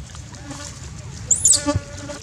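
Baby long-tailed macaque screaming in distress as a bigger monkey attacks it: short, loud, high-pitched squeals about a second and a half in.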